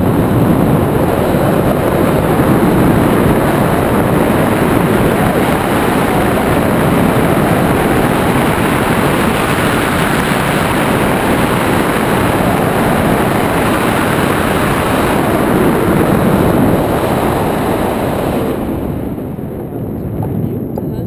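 Wind rushing over the camera's microphone in paraglider flight: a loud, steady rumble and hiss that eases a little near the end.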